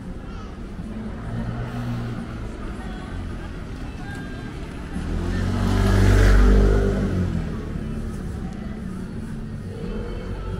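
A motor vehicle passing close by, its engine and tyres growing louder about five seconds in, loudest about a second later and fading away over the next two seconds, over steady street background.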